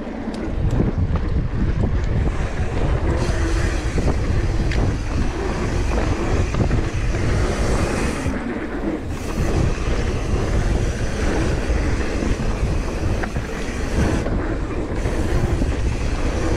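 Wind rushing over the camera microphone and mountain-bike tyres rolling on a packed-dirt trail during a descent, with many small clicks and rattles from the bike; the rush eases briefly twice.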